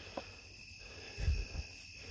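Steady high-pitched chorus of insects in the field, with a soft low thump a little past halfway.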